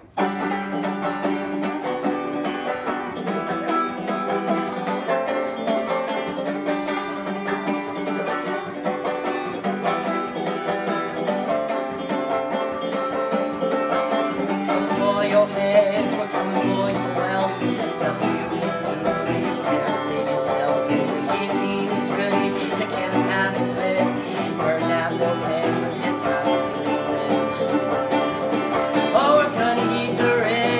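Folk punk played live on banjo and guitar, the music starting abruptly and carrying on at a steady level.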